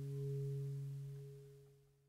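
The last chord of an acoustic guitar piece ringing out and fading away, dying to silence about one and a half seconds in.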